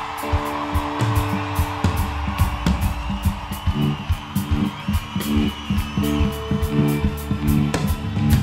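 Live rock band playing an instrumental passage with no vocals: drums keep a steady beat with cymbal strokes, under a moving bass line and sustained electric guitar.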